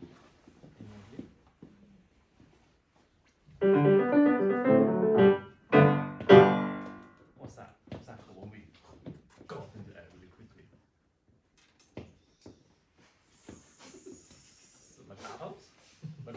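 Grand piano played for about three seconds in two quick runs of notes, a short break between them, then left to ring away. Soft talking comes before and after it.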